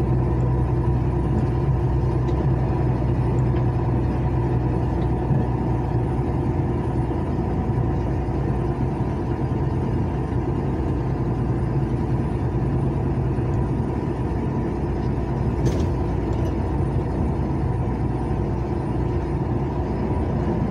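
Steady engine drone and road noise inside a moving truck's cab.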